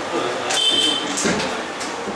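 Indistinct voices of people talking in the background, with a brief high-pitched tone about a third of the way in.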